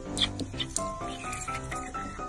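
Background music with steady plucked-string notes, over several short high-pitched squeaks from golden retriever puppies in the first second.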